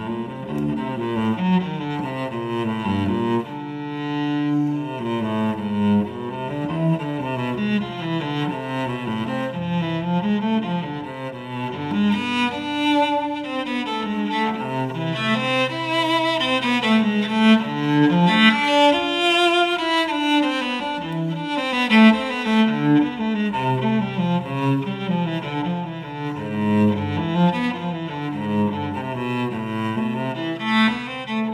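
Solo cello played with the bow: a continuous line of notes moving up and down, with a low note sounding under the upper notes in several stretches.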